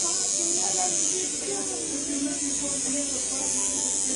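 Electric tattoo machine buzzing steadily with a high, hissy whine while it works on skin, with faint voices murmuring underneath.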